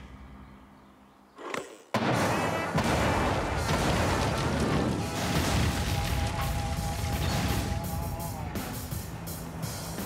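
After a hushed pause of about two seconds, an explosive charge detonated by a plunger goes off suddenly, and the blast's noise carries on loud and sustained. Background music plays over it.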